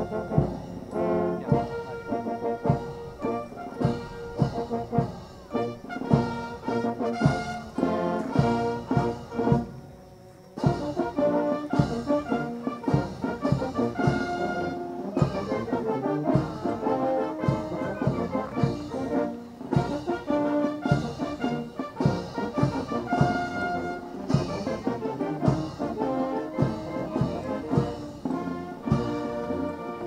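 Military brass band playing a march, trombones and trumpets over a steady drum beat, with a short break about ten seconds in.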